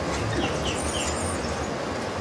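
Outdoor ambience: a steady rushing noise with a low rumble, and a few short bird chirps, three of them in quick succession in the first second.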